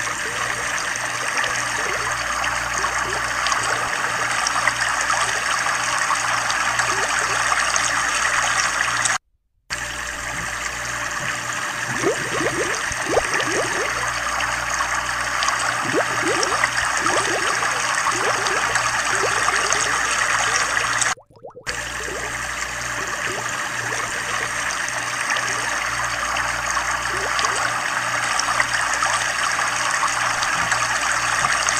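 Steady trickling, bubbling water, as from an aquarium's water flow, with clusters of quick bubble blips in the middle stretch. The sound cuts out completely for a moment twice, about a third and two thirds of the way through.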